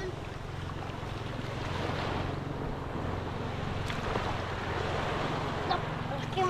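Small waves washing onto a sandy shore, with wind buffeting the microphone and a steady low drone underneath.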